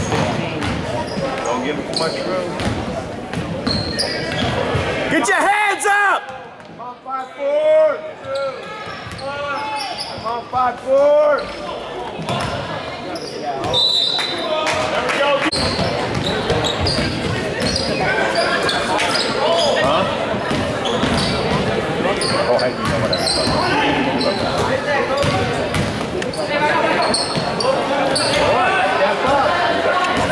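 Basketball game in a gym: a ball bouncing on the hardwood floor, sneakers squeaking in short chirps, clustered around six to eleven seconds in, over the chatter of the crowd in the stands.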